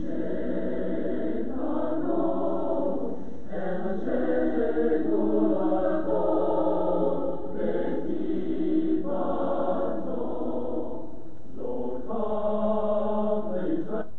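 Recording of an unaccompanied vocal ensemble singing a synagogue choral piece, played back in the hall: sustained chords sung in phrases, with short breaths between them every few seconds.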